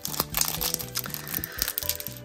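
Foil wrapper of a Pokémon TCG Fusion Strike booster pack crinkling and crackling as hands work it open. Steady background music plays throughout.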